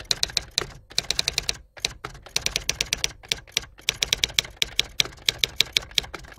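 Typewriter keystroke sound effect: rapid runs of sharp clacking keystrokes with short pauses between them, keeping time with the text being typed out on screen.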